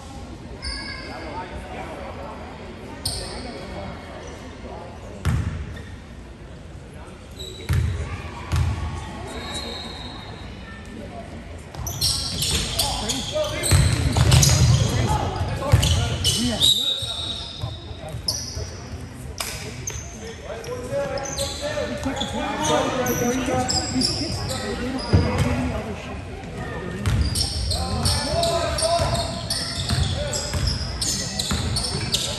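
Basketball game sounds in a gym: a ball thudding on the hardwood floor and sneakers squeaking, under a murmur of spectators. The voices get louder and more excited in the middle.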